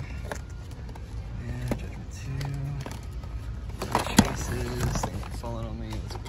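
Background music with a voice, over a steady low hum, and a sharp plastic click about four seconds in as blister-packed diecast cars are handled on store pegs.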